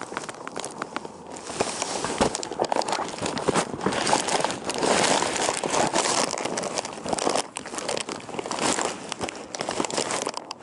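Rustling, crinkling handling noise, irregular and full of small clicks and crackles, as from a camera or its microphone rubbing against fabric or a bag.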